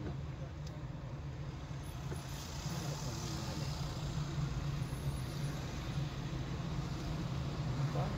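Steady low drone of a car's engine and road noise heard from inside the moving car, growing a little louder a few seconds in.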